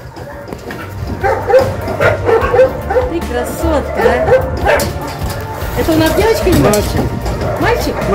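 Dogs yipping and whining excitedly, a quick run of short yelps that bend up and down in pitch, starting about a second in.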